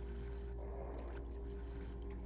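A faint, steady hum of several sustained low tones, with a few soft clicks over it.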